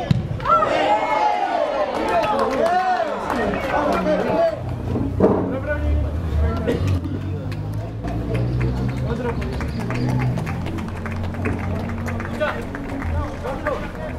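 Voices shouting and calling out across a football pitch for the first few seconds, then a steady low rumble with scattered small clicks.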